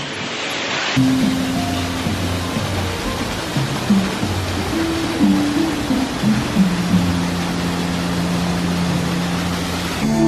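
Steady rush of a small waterfall spilling over rockwork, with background music of low held notes that shift pitch now and then. Both begin about a second in.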